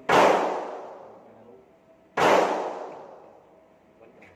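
Two handgun shots about two seconds apart, one near the start and one about halfway through, each with a long echoing decay in an indoor shooting range.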